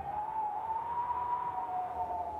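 A faint held high tone with a fainter, lower tone beneath it, its pitch drifting slightly up and then back down.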